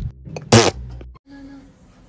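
A short, sharp noisy burst about half a second in, followed by a faint steady low hum.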